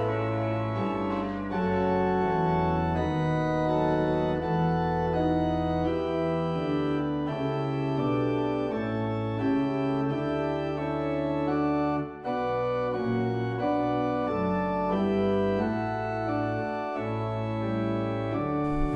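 Church organ played from a three-manual console: held chords over sustained bass notes, with the chords changing every second or so. There is a brief break in the sound about twelve seconds in.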